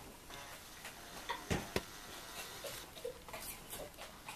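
Quiet room with a few faint clicks; two sharper clicks come close together about halfway through.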